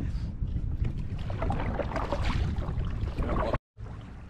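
Wind rumbling on the microphone with people laughing; the sound cuts out suddenly near the end, then returns quieter.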